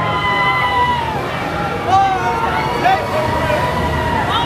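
Riders on a spinning amusement ride yelling and screaming: long held screams, then short shouts about two and three seconds in, over a steady low rumble from the running ride.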